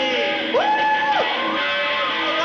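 Live rock band playing with guitar. A strong high note slides up about half a second in, holds, and drops away a little after a second.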